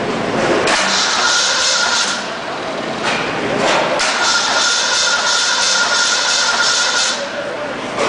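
Starter motor cranking a rebuilt Ford 302 V8 in two bursts, a short one of about a second and a half and then a longer one of about three seconds, with a steady starter whine; the engine does not catch.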